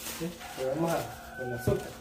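Quiet, untranscribed speech, with a single short knock near the end.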